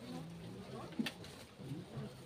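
Low murmuring voices with one sharp metallic clink about a second in: a serving spoon striking a steel bowl as rice is ladled into monks' alms bowls.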